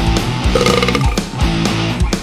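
Heavy rock song from a band: drums hitting about four times a second under distorted bass and guitar. About half a second in, a short held pitched sound rises above the mix.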